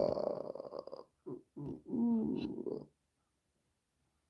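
A man's wordless vocal sounds in three stretches: one about a second long, a short one, then a longer one that stops about three seconds in.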